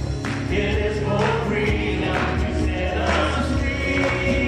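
A live church worship band playing: a man and women singing together over acoustic guitar and keyboard, with a steady beat about once a second.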